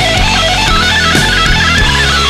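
Instrumental break in a heavy rock song: electric guitar playing a melodic line over bass and drums, with no vocals.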